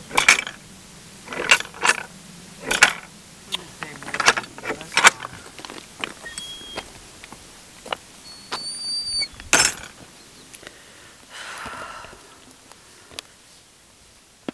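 Irregular knocks and clicks from footsteps on a rough track and from handling of the handheld camera, about one a second at first and thinning out later, with a few loud ones. A few short, thin high-pitched squeaks come in the middle.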